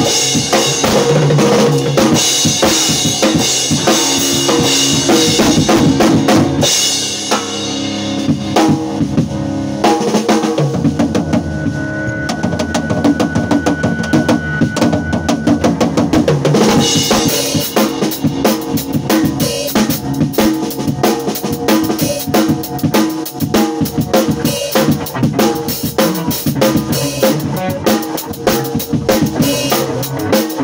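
A live drum kit and an electric guitar jamming together, with bass drum and snare hits driving a steady beat. Between about 7 and 17 seconds the playing thins out, with one held high note partway through, then the full kit comes back in.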